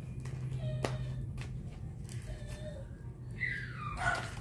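A dog whining in the background: a high cry that falls in pitch near the end, over a steady low hum and a few sharp clicks.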